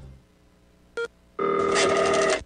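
The end of a jingle fades into near silence, broken by a short beep about a second in. About halfway through, a steady electronic telephone ring starts, made of several held tones.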